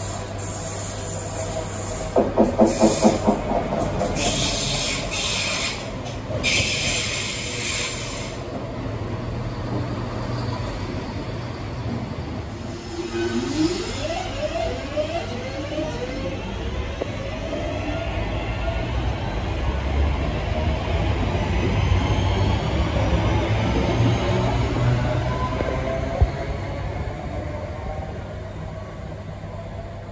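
Passenger multiple-unit train pulling out of a station platform. A rapid run of sharp pulses comes about two seconds in, then a few seconds of hiss, then a whine in several parallel tones rising in pitch over a low rumble as the train accelerates away.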